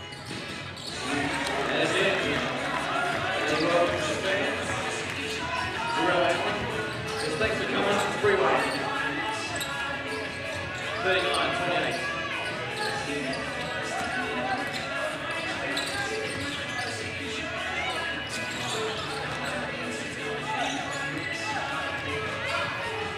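Live basketball game sound on a hardwood court: a ball bouncing amid players' and spectators' indistinct shouts and chatter.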